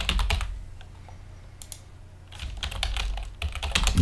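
Typing on a computer keyboard: a quick run of keystrokes, a pause of about two seconds, then another run of keystrokes.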